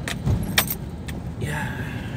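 Car cabin noise on a rough, potholed dirt road: a steady low engine and tyre rumble, with a few sharp rattles and knocks as the car jolts over holes, the loudest about half a second in.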